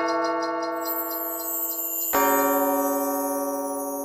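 Bronze temple bell struck with a wooden striker, ringing on and slowly fading; struck again about two seconds in, sounding a different note that rings on.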